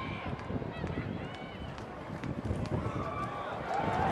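Stadium crowd noise from a football game: a steady hubbub of many voices with scattered shouts and a few sharp clicks as the ball is snapped.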